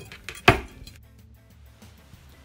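A single sharp knock about half a second in, a utensil set down on a cutting board, under faint background music.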